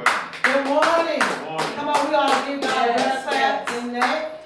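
Hands clapping in a steady rhythm, about three claps a second, with a woman's voice over the clapping.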